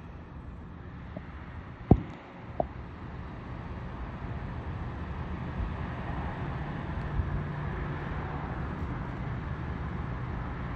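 Road-traffic noise that builds after a few seconds and then holds, like a vehicle drawing near, with two light knocks about two seconds in.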